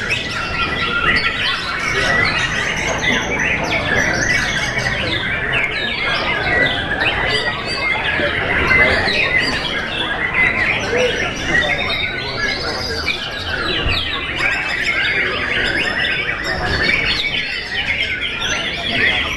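Many caged white-rumped shamas (murai batu) singing over one another in a dense, continuous chorus of loud whistles and warbles.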